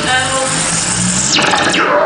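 Electronic music from a synthesizer: a few low bass notes with a pitch sweep falling away about one and a half seconds in.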